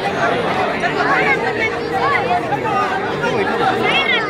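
Several people talking at once, overlapping chatter with no single voice standing out.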